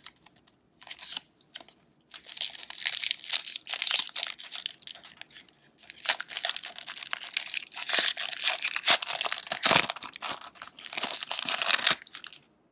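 A trading-card pack's shiny wrapper being torn open and crinkled by hand, in irregular bursts of crackling, with a short pause midway.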